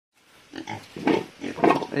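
Domestic pigs grunting, several short grunts in a row.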